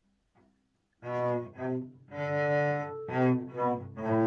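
Cello bowed by a beginner, playing a slow tune of separate notes that starts about a second in, with one longer held note in the middle.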